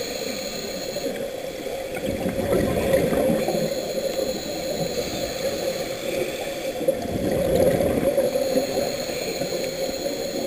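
Muffled underwater noise picked up through a camera housing, with the gurgling of scuba divers' exhaled bubbles from their regulators swelling up about three seconds in and again near the end.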